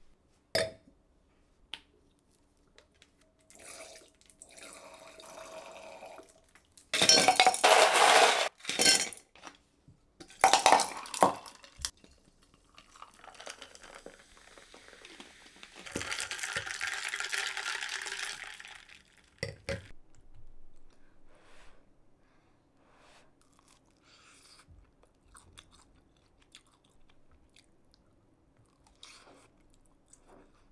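Glass and ice sounds of a drink being made in a stemmed wine glass: two loud bursts of clattering about seven and ten seconds in, a steady hiss for a few seconds around the middle as the glass is filled and shaken, a sharp knock, then scattered light clinks.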